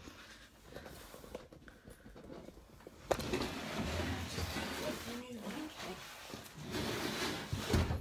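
Camera tripod being lowered and the camera handled: small clicks, then a sharp knock about three seconds in and irregular rubbing and knocking noise on the microphone.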